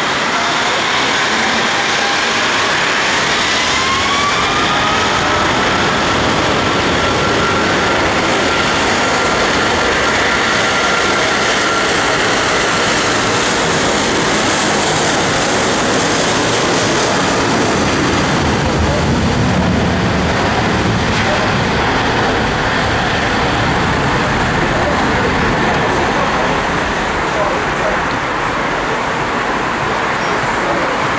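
Boeing 777-200ER's Rolls-Royce Trent 800 jet engines spooling up for takeoff. A whine rises in pitch over the first few seconds, then holds steady over a loud rushing noise, and a deeper rumble builds past the middle as the jet rolls down the runway.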